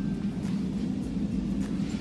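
A steady low rumble of background noise, with no speech.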